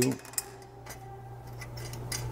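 Wing nut being turned by hand off a metal screw post of a downlight fixture: a few faint metallic clicks, one sharper about half a second in, over a steady low hum.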